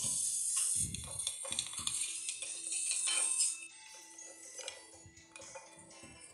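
Kinetic sand crunching and crumbling as a wooden block presses into it, a crisp hiss that stops abruptly about three and a half seconds in. Soft background music with steady held tones.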